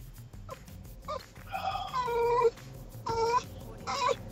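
A few short, high-pitched, voice-like calls, well above a man's speaking pitch: one about a second and a half in, a longer one around two seconds, and another about three seconds in.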